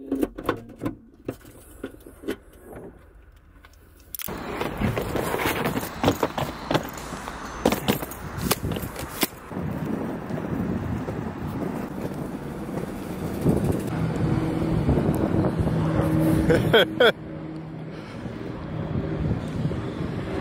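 Footsteps on pavement over steady outdoor traffic and wind noise, which starts suddenly about four seconds in after a few quiet clicks. A vehicle engine hums steadily for a few seconds past the middle, and a short laugh comes near the end.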